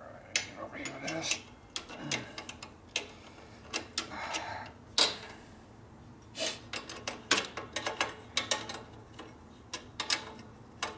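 Irregular sharp metallic clicks and clinks from a motorcycle clutch cable and its fittings being handled and fitted by hand, the loudest about five seconds in.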